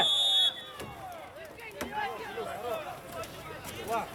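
A short, shrill whistle blast at the very start, then distant shouting from players and coaches across the pitch.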